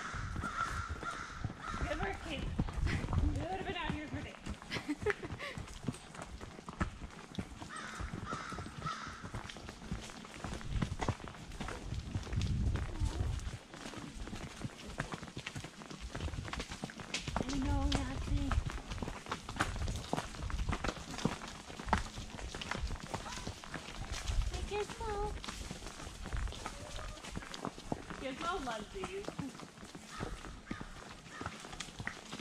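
A horse's hoofbeats on a dirt forest trail, a steady run of short clicks, with brief low rumbles now and then and short fragments of voices.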